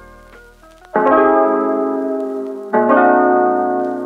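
Background music: piano-like keyboard chords, one struck about a second in and another just before three seconds, each ringing on and slowly fading.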